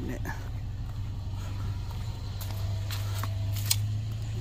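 Pickup truck engine idling with a steady low hum. Near the end there is a single sharp click as a magnet snaps onto a metal chair frame.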